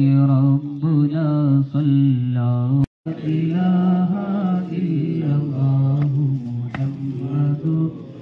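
A man's voice chanting a devotional song into a microphone, with long, ornamented held notes. The sound drops out for a moment about three seconds in, then the chanting carries on.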